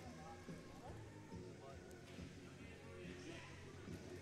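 Faint, indistinct murmur of spectators' voices in a gymnasium.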